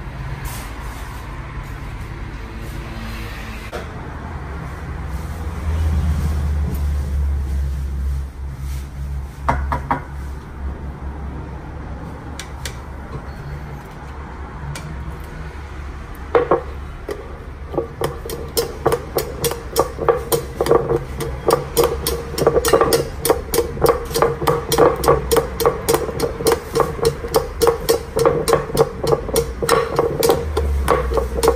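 A metal ladle mashing cooked chickpeas in a ceramic bowl. A few scattered clinks come first, then, a little past the middle, a fast, even knocking of about two to three strokes a second, each ringing slightly, over a steady low hum.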